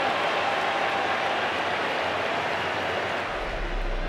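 Stadium crowd noise: a steady wash of many supporters' voices, with no single cheer or chant standing out.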